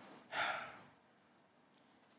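A person's short breathy exhale, like a sigh, about half a second in, fading out into quiet room tone.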